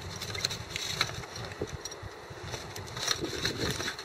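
Low wind rumble on the microphone, with a few faint metallic clicks as a propane pigtail hose's fitting is threaded by hand into a brass adapter.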